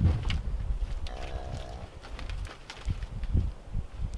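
A short, low moo from cattle, about half a second long, a little over a second in, over low rumbling noise and a few soft knocks.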